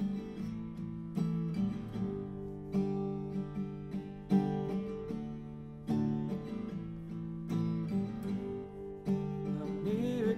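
Acoustic guitar playing slow strummed chords, a new chord struck about every second and a half, with no voice over it.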